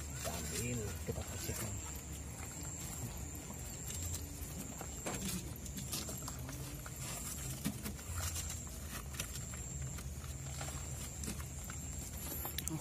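Faint rustling, scraping and small knocks of gloved hands working a paper wasp nest loose from under roof tiles and into a plastic bag, with a faint steady high whine behind.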